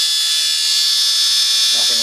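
Small brushed DC motor running steadily with a high-pitched whine and hiss. A man's voice comes in at the very end.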